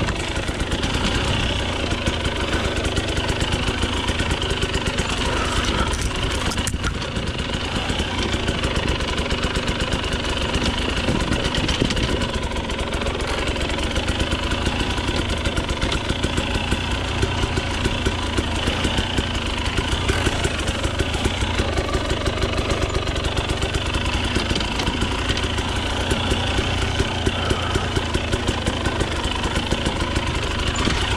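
Husqvarna TE 250i two-stroke enduro motorcycle engine running steadily at low revs, with a fast, even pulsing and no big revving.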